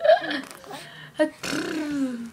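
A baby cooing: three short vocal sounds, one at the start, one just after a second in, and a longer coo near the end that falls in pitch.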